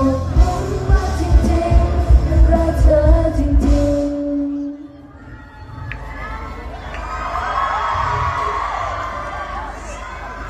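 A live pop song with a band ends on a long sung note over drums and bass, and the music stops about four and a half seconds in. Then the crowd cheers and screams.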